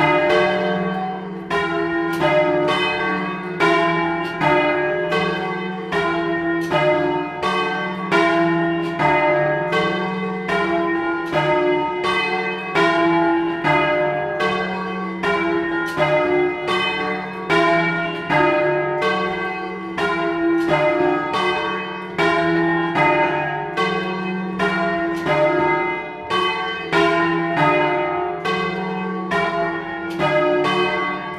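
Three swinging church bells, cast by Luigi Magni in 1948 and 1953 and tuned to E-flat, F and G, rung by rope in turn. Their strikes follow in a steady rhythm, a little under two a second, each note ringing on into the next.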